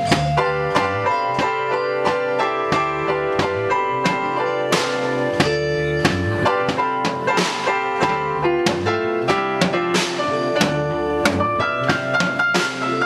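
Live band improvising a jam: drum kit keeping a steady beat under guitar and keyboard, with long held notes over the rhythm.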